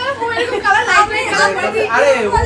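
Only speech: several people chatting.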